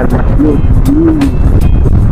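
Strong wind buffeting the microphone: a loud, steady low rumble, with background music faintly underneath.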